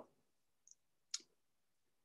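Near silence with a single short click a little over a second in.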